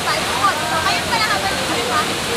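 Steady rush of a waterfall, with several people chattering over it.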